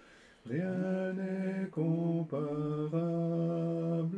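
Slow, unaccompanied singing of a hymn: long held notes with short breaks between them, beginning after a brief pause.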